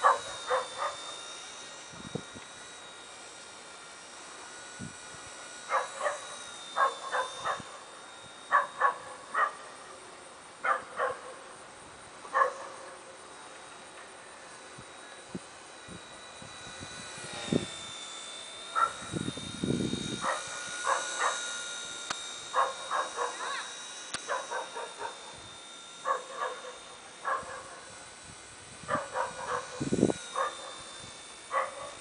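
Blade mCP X V2 micro RC helicopter's electric motors and rotors whining steadily overhead, the pitch dipping and recovering now and then as it manoeuvres. Clusters of short clicks come and go throughout, which the owner puts down to the camera lens, and a brief low rumble comes about two-thirds of the way in.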